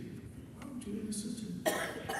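A person's single short cough, sharp and loud, near the end, after a low murmur of voice.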